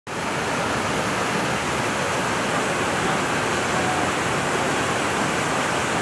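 Steady, even rush of the Düden waterfall pouring into its pool.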